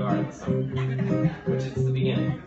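Acoustic guitar played live in a repeating rhythmic pattern, with a short dip in the loudness about once a second. It is the instrumental lead-in to a song, before the singing begins.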